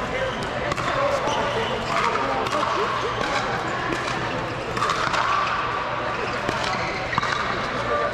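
Pickleball paddles hitting plastic balls on nearby courts: irregular sharp pops, over a background of people's voices chattering.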